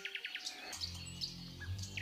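Faint bird chirps, with a low steady hum coming in under them about a second in.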